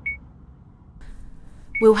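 Two short, high electronic beeps, one at the very start and one about a second and three-quarters later, just as speech resumes.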